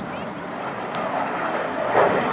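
Avro Vulcan XH558's four Rolls-Royce Olympus turbojets running in a steady, even rush of jet noise as the delta-wing bomber flies past, with indistinct crowd voices over it.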